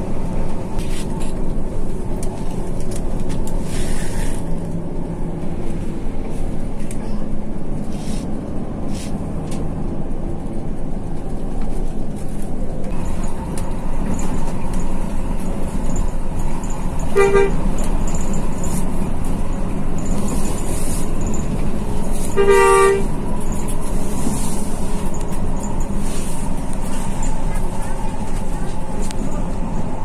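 Intercity bus driving on the highway, heard from inside the cab: a steady engine and road drone. Just past the middle there is a brief horn toot, and a few seconds later a longer one, about half a second.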